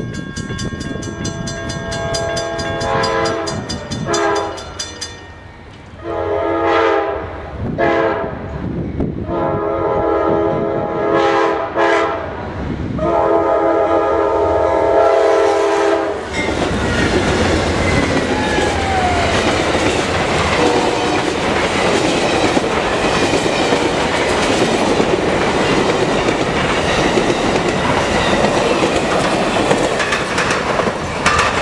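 Amtrak passenger train led by GE P42DC locomotives sounding its horn in a series of blasts for a grade crossing; the last, long blast ends about halfway through as the locomotives pass. Then comes the steady rumble and wheel clatter of the passenger cars passing close by.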